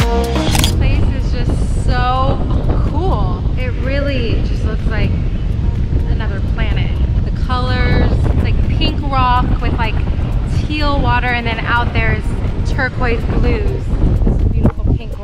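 Electronic music cuts off about half a second in. After that, seabirds give a string of short, bending cries over strong wind buffeting the microphone.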